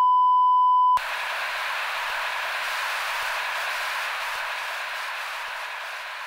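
A steady, high electronic beep that cuts off sharply about a second in. It is followed by a hiss of static that slowly fades.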